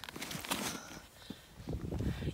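Uneven crunching and scuffing on packed snow from people moving and kneeling at the ice hole, with a short rush of noise in the first second.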